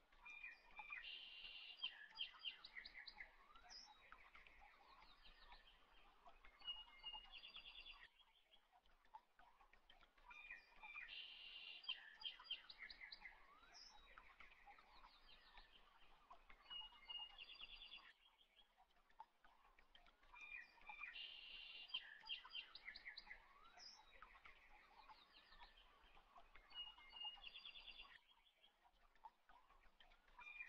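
Faint birdsong of chirps and short trills. The same stretch of about eight seconds repeats three times with short gaps between, the sign of a looped birdsong ambience track.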